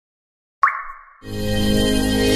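Dead silence, then about half a second in a sudden short logo sound effect whose pitch slides down as it dies away. Soon after, intro music swells in with sustained tones over a low bass.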